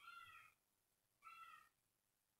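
Two faint, short animal calls about a second apart, each a pitched cry that falls slightly in pitch.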